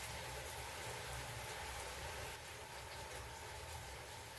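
Faint steady hiss with a low hum underneath: the background noise of the recording, with no distinct sound events.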